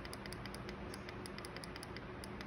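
Repeated presses on the down-arrow key of an e-bike conversion kit's handlebar LCD display, stepping the maximum-speed setting down: faint, quick clicks, several a second.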